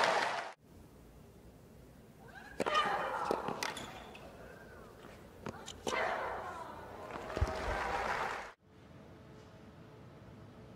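Crowd cheering cuts off about half a second in. After a pause comes a tennis rally: rackets striking the ball, with Aryna Sabalenka's grunts on her shots. Near the end it cuts to a quiet stretch with a faint hum.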